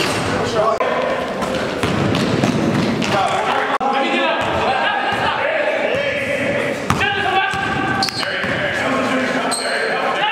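Live basketball game sound in a gym: a basketball bouncing on the court floor, with a few sharp impacts, under indistinct voices of players calling out, echoing in the large hall.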